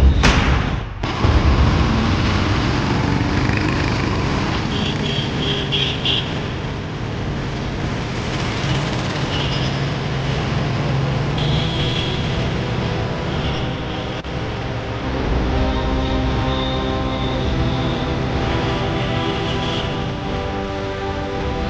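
Street traffic noise, a steady rumble of passing vehicles, with music playing over it; the music becomes clearer in the last few seconds.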